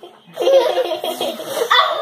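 Young girls giggling and laughing, starting about a third of a second in.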